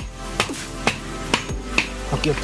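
Hammer blows striking at a steady pace of about two a second, typical of nailing during construction work.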